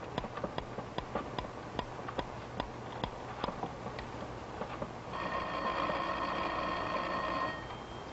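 A clock ticking steadily, then a telephone rings once for about two and a half seconds, starting about five seconds in.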